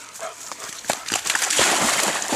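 A young black Labrador retriever's paws slapping into shallow pond water, then a loud, continuous splashing as she plunges in and drives out after a retrieve. A few separate slaps come about a second in, and the splashing fills the second half.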